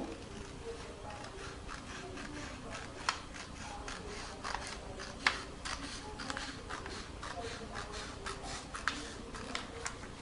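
Scissors cutting a strip off a sheet of printer paper: a steady run of short snips, about two to three a second.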